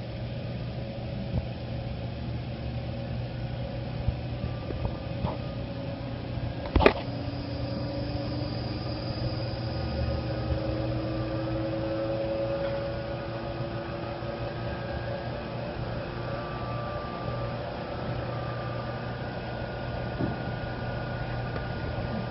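Electric motor run by an Eaton SVX9000 variable-frequency drive, speeding up as the drive ramps toward 60 Hz. A steady hum carries faint tones that slowly rise in pitch. A single sharp knock sounds about seven seconds in.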